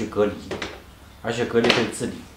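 A man talking in Mandarin Chinese in two short phrases, with a brief pause between.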